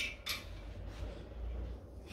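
Faint metal clicks as the rod of a dial bore gauge is set against the cylinder sleeve of an aluminium open-deck engine block, one right at the start and another about a quarter second in, over a steady low hum.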